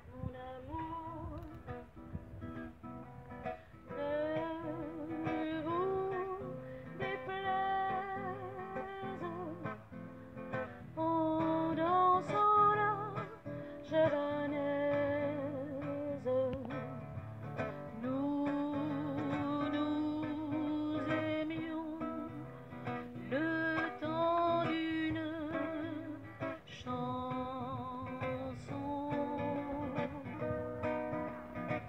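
A women's vocal group singing a French song into microphones over guitar accompaniment, amplified through a PA loudspeaker. The sung melody wavers with vibrato on long held notes.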